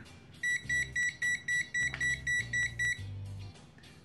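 ANENG AN8203 pocket multimeter's piezo buzzer sounding its over-voltage alarm: a rapid run of high beeps, about five a second, starting about half a second in and stopping about three seconds in. It warns that the 1000 V input is over the meter's 600 V rating.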